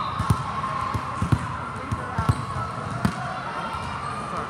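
Volleyballs bouncing on the court floor: about half a dozen irregular thumps, a few in quick pairs, over the chatter of a large, echoing hall.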